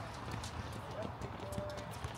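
Footsteps of several basketball players running on an outdoor hard court: a run of short, light knocks.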